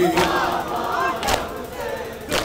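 A crowd of mourners doing matam: two strikes of hands on chests in unison, about a second apart, with crowd voices calling out between them. The held note of the nauha singing dies away at the very start.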